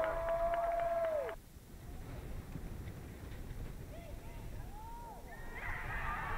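Soccer players screaming and shouting in celebration after a goal, high-pitched with a long held cry, cut off abruptly about a second and a half in. Then quieter open-field sound with a few faint distant calls, voices building again near the end.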